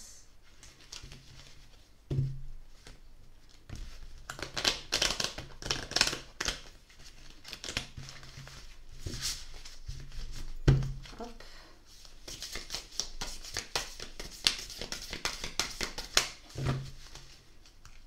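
A deck of oracle cards being shuffled by hand: irregular bursts of crisp card-on-card rustling and flicking, with a few dull thumps, the loudest about two-thirds of the way through.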